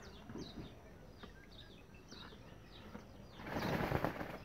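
Small birds chirping, with many short, high, falling notes over a quiet background. Near the end a brief hiss swells up and fades.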